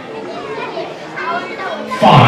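Indistinct chatter of several voices, children's among them, from an audience waiting in a hall.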